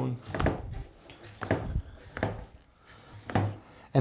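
Hand siphon pump drawing gasoline out of a snowblower's fuel tank into a plastic gas can: scattered light clicks and knocks from the pump and hose as it is worked.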